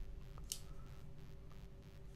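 A single short, sharp click about half a second in from handling a Benchmade Adamas folding knife, over a faint steady hum.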